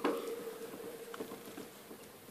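Ferret lapping and licking thick wet food from a bowl: soft, irregular wet clicks, with a sharper click at the start, over a faint steady hum.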